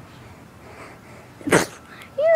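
A quiet stretch of handling noise, then one short, sharp hit about one and a half seconds in: a fist striking a GoPro camera to send it up like a volleyball, heard through the camera's own microphone.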